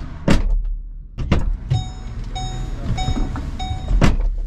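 Car door opening with a latch click, a person getting into the seat with a few knocks, then the car's door-open warning chime beeping four times at an even pace, and a loud thud as the door shuts near the end.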